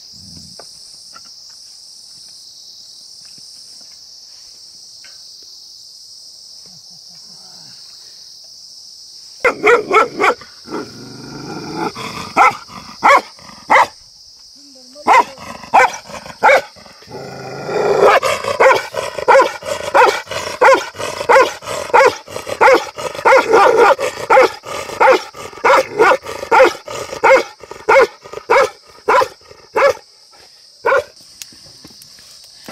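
A dog barking repeatedly, starting about a third of the way in, the barks coming faster and closer together through the second half. A steady high-pitched hiss runs underneath.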